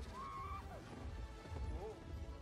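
Film soundtrack: music and a deep rumble, over which an animal or creature gives two whinny-like calls. The first rises and falls in the first half-second or so. The second is shorter and falls in pitch near the end.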